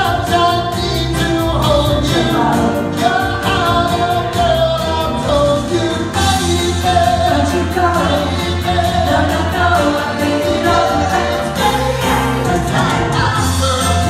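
A female vocal group singing live through a PA, several voices together, over an accompaniment with a steady beat and bass.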